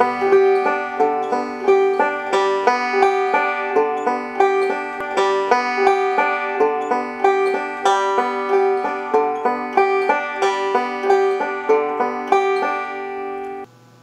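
Five-string banjo played slowly with thumb and finger picks, repeating the alternating thumb roll (strings 3-2-5-1-4-2-5-1) as an even, steady stream of single plucked notes. The picking stops shortly before the end.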